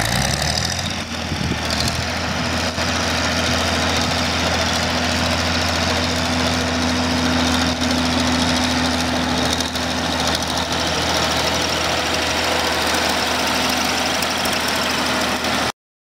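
1966 Case 930 Comfort King's six-cylinder diesel engine running steadily as the tractor is driven along. The sound cuts off suddenly near the end.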